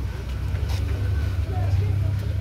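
A steady low rumble, with people's voices faint in the background.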